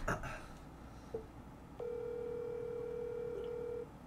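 Telephone ringback tone heard over a phone's speaker: one steady tone lasting about two seconds, the outgoing call ringing while it waits to be answered. A brief short tone comes about a second in, before it.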